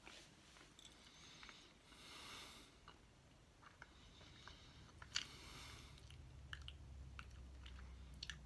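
Faint chewing of a soft jelly bean: scattered small wet mouth clicks, with two short soft hissing sounds about two and five seconds in.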